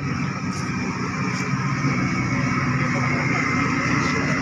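Moored passenger ferry's diesel engines running steadily: a low, even hum with a faint high whine above it.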